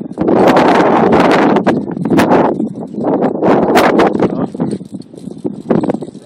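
Wind buffeting the microphone: a loud, rough rushing that comes and goes in gusts with crackling bursts, strongest in the first two seconds.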